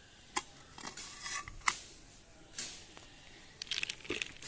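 Metal hoe blade scraping and scooping potting soil on a hard floor and knocking against a plastic pot: a few separate scrapes and knocks, with a quicker run of them near the end.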